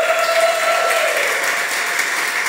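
Audience applauding, with dense, steady clapping. A held tone, with an overtone above it, sounds over the clapping and fades out a little more than a second in.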